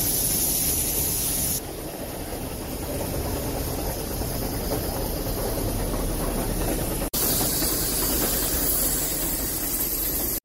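Brienz Rothorn Bahn steam rack locomotive and its coaches passing slowly, a steady hiss of steam over the low rumble of the train on the cog rack. The high hiss drops about one and a half seconds in, and the sound breaks off briefly about seven seconds in.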